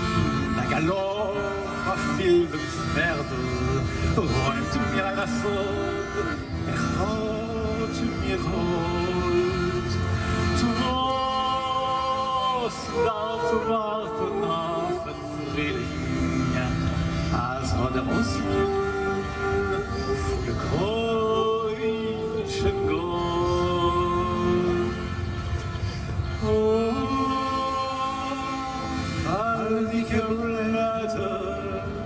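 A slow Yiddish folk melody played live on accordion and saxophone, with long held notes over accordion chords.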